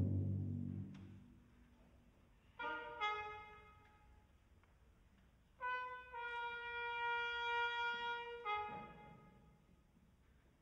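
Sparse contemporary chamber-ensemble music. A low timpani rumble fades out in the first second. After a pause, two short brass notes come in about two and a half and three seconds in, followed by a long held brass note from about five and a half to eight and a half seconds.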